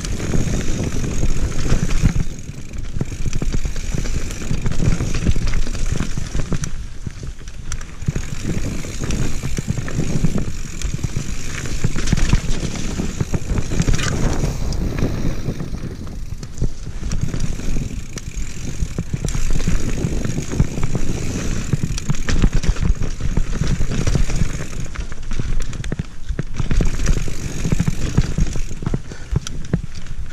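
Mountain bike riding down a dirt forest singletrack: a continuous rough rumble of tyres on dirt and the bike rattling over bumps, rising and falling with the terrain, with scattered sharp clatters.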